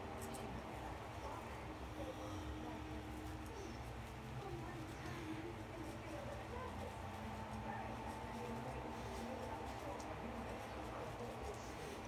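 Faint scraping of a Diamond Edge 5/8 square-point straight razor shaving lathered neck stubble, over a low steady hum and faint distant voices.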